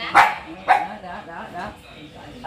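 A dog barking: two sharp barks in the first second, then a few fainter barks.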